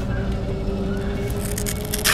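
Steady outdoor background hum, with a brief scraping, crackling rustle near the end as hands handle the GPS unit on the back of the RC truck.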